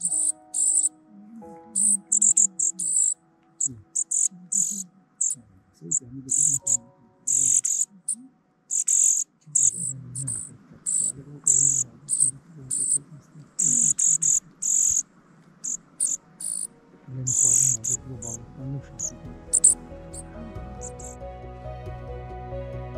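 Dark-eyed juncos giving quick, high-pitched chirps, over and over at an uneven pace. Soft music fades in near the end.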